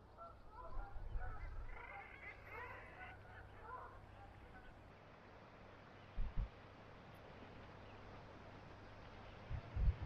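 A group of birds calling in quick, chattering bursts for the first few seconds, over a steady faint hiss of wind and sea. Two short low thumps follow, about six seconds in and near the end.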